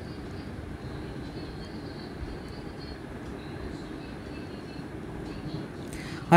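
Steady low background rumble with faint, brief high-pitched tones scattered through it.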